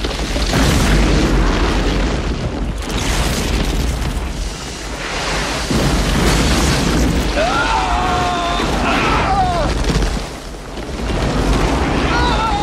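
Film sound effects of a violent explosive blowout: a dense, loud rumbling roar of blasts and debris that surges and eases twice. A pitched wail rises and falls between about seven and a half and nine and a half seconds in.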